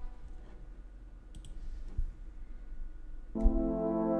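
Sampled orchestral brass ensemble (Kontakt's Brass Ensemble Essential): after about three quiet seconds with a few faint clicks, a sustained brass chord starts abruptly near the end and holds.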